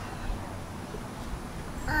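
Outdoor background with a steady low rumble and no distinct sound; a child's voice begins answering near the end.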